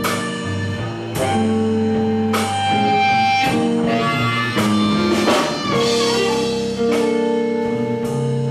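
Live electric blues band playing: amplified harmonica blown into a hand-cupped microphone over electric guitar, upright bass and drum kit, with held, bending notes and a drum stroke roughly once a second.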